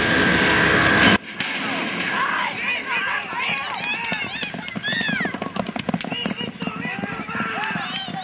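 A loud, steady ringing for about the first second, likely the starting-gate bell, which cuts off abruptly. Then spectators shout and yell excitedly as two horses race down a dirt track, with sharp clicks scattered through the shouting.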